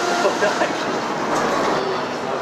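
Steady city street noise, the even rumble of traffic, with a short laugh about a second in.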